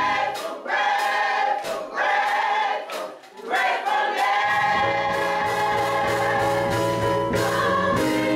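Gospel choir of women's and men's voices singing in phrases with short breaks between them. About halfway through, steady low tones come in beneath the voices and the singing carries on without a break.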